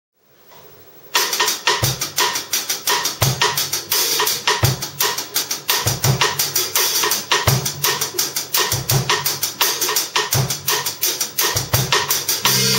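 Yamaha drum kit playing a fast, busy jazz pattern of quick cymbal and snare strokes, with a deep drum hit about every one and a half seconds. It starts suddenly about a second in.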